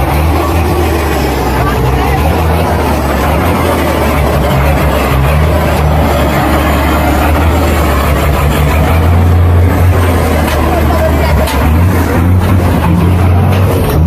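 Old off-road cargo truck's engine running loud and steady as the truck works through deep mud and drives into a river.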